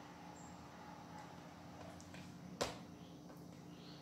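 Faint squelching of sticky, soft bread dough being lifted and folded by hand in a plastic bowl, with one sharp click about two and a half seconds in.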